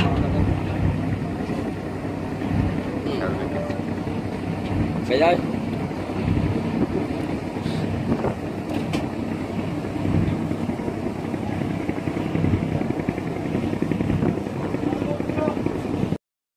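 Boat engine running steadily with water rushing past the hull, with people's voices in the background.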